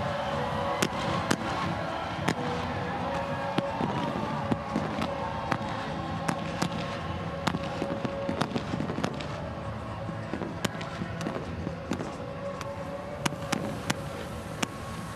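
Celebration pyrotechnics going off in a long string of sharp, irregularly spaced cracks over a steady background of music and noise.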